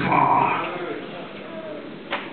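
A man's drawn-out vocal cry through a handheld microphone and church PA, loud at first and fading away within about a second.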